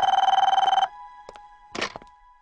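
Desk telephone ringing with a steady electronic trill, cut off abruptly under a second in as the call is answered, then a couple of faint clicks and a brief clatter from the corded handset being picked up.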